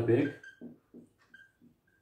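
A spoken word trails off, then a whiteboard marker writes with a few faint, brief high squeaks.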